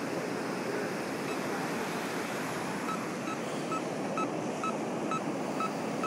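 Steady rush of ocean surf and wind. From about three seconds in, a faint high beep repeats about twice a second from a Pioneer 505 metal detector.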